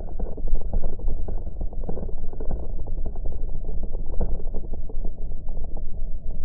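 A motorcycle rides along a rough dirt road, heard muffled: a steady low engine and road rumble broken by many small knocks and jolts from the bumpy surface.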